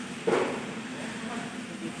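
A steady low hum, with a short vocal sound from a man about a third of a second in.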